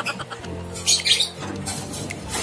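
A lovebird gives one short, harsh burst of squawking chatter about a second in, over steady background music.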